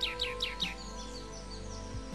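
A bird chirping: a quick run of short, falling chirps in the first second, over soft background music.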